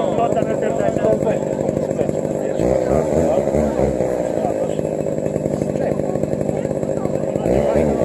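Two-stroke chainsaw engine running steadily, revved up and back down twice, about three seconds in and again near the end, with men's voices underneath.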